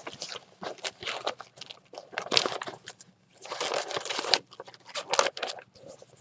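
Irregular crinkling and rustling as papers in plastic sleeves are pushed into a lined fabric project bag and the bag is handled, with a short pause about halfway through.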